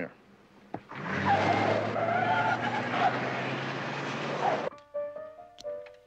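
Car tyres squealing for about four seconds as the car takes a sharp right turn, with a wavering squeal over a low hum, cutting off suddenly. A few held music notes come in near the end.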